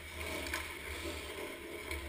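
Ice skate blades scraping and gliding on rink ice close to the net, over a steady low rumble.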